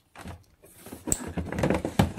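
A plastic freezer drawer slid shut on its runners: a click about a second in, then a scraping rumble that ends in a knock as the drawer closes.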